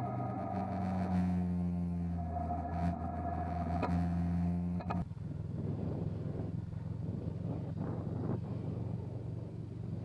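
Motorcycle engine running steadily at cruising speed. About five seconds in, the sound changes abruptly to a rougher, noisier rumble with less distinct engine tone.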